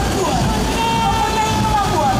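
Engines of Mercedes-Benz Unimog military trucks rumbling as the column drives slowly past, under a voice calling out whose words are not clear.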